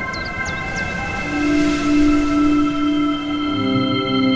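Ambient meditation music: a sustained synth drone chord over a low rumble, with a deeper held note swelling in about a second in. A few high, falling chirps trail off in the first second.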